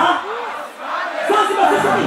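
Large concert crowd screaming and shouting while the music briefly drops out, the beat coming back in near the end.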